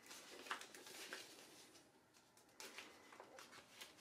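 Near silence, with faint rustling and a few small crinkles as the black plastic light-tight bag holding glass dry plates is handled, in two short spells.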